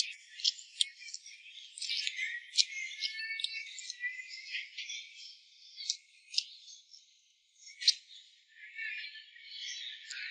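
Shrimp being peeled by hand and eaten: irregular crackles and sharp clicks of the shells cracking, with wet chewing and mouth sounds. The sound is thin, with no low end.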